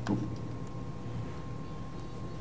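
Low steady background noise with a thin, faint steady whine, and one soft click just after the start; no distinct event.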